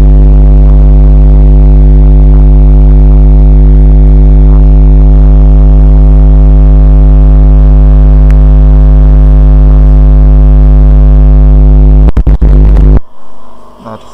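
Loud, steady electrical mains hum with a stack of buzzy overtones, an electrical fault in the recording's audio chain. It stutters and cuts off about 13 seconds in.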